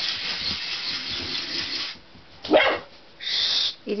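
Wind-up toy alligator's clockwork running with a steady rasping whirr that stops about two seconds in, then a single loud bark from a dachshund puppy.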